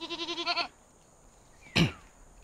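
A goat bleating once, a quavering call lasting under a second, followed near the end by a brief loud sound that falls steeply in pitch.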